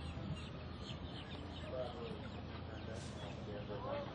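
Outdoor background noise with a few short, curved bird-like calls in the middle and a rising call near the end, over faint distant voices.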